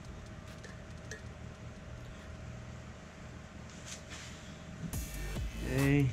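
Low steady hum with a few faint clicks as glued PVC pipe fittings are handled; rustling and a short vocal sound near the end.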